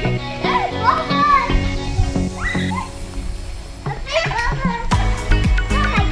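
Young children's voices calling out and squealing as they play, over steady background music.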